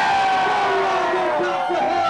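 A man's long held shout on stage that slowly falls in pitch, over a crowd of voices yelling and cheering.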